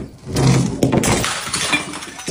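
Glass bottles smashing as a bowling ball crashes into a stack of bottles on concrete. A loud crash about half a second in is followed by a second sharp hit and scattered clinking of glass shards that dies away.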